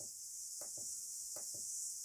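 Several faint clicks from the small tactile push-button on an XH-M609 undervoltage protection module, pressed one at a time to step the switch-on voltage setting down, over a steady high hiss.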